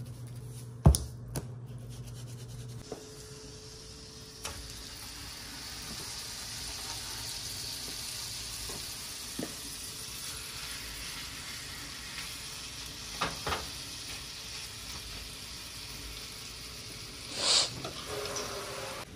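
New York strip steaks sizzling in a hot skillet of melted butter and grapeseed oil as they are laid in, the sizzle swelling after about four seconds. There is a sharp knock about a second in and a few light clicks later.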